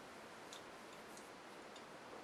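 Near silence: quiet room tone with a few faint ticks.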